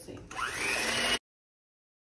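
Electric hand mixer starting up in a bowl of heavy cream, its motor whine rising in pitch as the beaters spin up, running for under a second before the sound cuts off suddenly.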